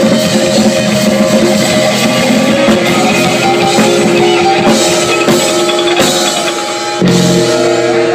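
Live band playing instrumentally: drum kit, electric guitars and bass. About seven seconds in the bass drops away and held notes ring on.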